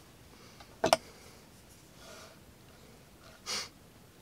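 Quiet room tone, broken by a short spoken word with a sharp click about a second in, and a brief sniff near the end.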